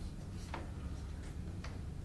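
Room tone in a courtroom: a low steady hum with two or three faint clicks.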